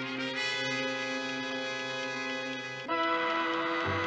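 Dramatic orchestral background music led by brass holding sustained chords, with a louder brass chord coming in about three seconds in.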